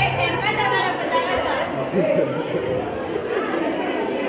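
Several people talking at once in a large hall, a general chatter of voices, with the tail of background music cutting off about a second in.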